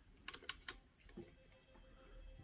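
Faint light clicks and taps of the plastic housing of an LED security light being handled and turned over in gloved hands: a quick cluster of four or five clicks in the first second, then one softer knock.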